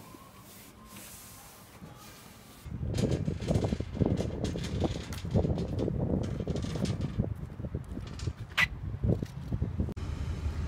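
Faint warehouse room tone, then, from about a third of the way in, a metal flatbed trolley rattling loudly as its wheels roll over brick paving, with a sharp click near the end.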